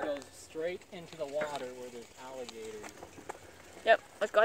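People's voices talking indistinctly, quieter than close speech, with a short loud vocal burst near the end.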